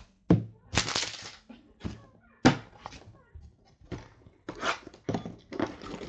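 Cardboard trading-card boxes and cards being handled on a table: a few sharp thumps with rustling and sliding in between.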